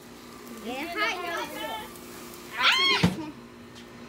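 Young children's high-pitched voices, calls and exclamations without clear words, one rising and falling squeal near the three-second mark, followed by a single sharp knock.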